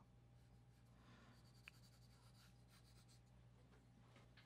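Faint scratching of pencil strokes on drawing paper, over a low steady hum.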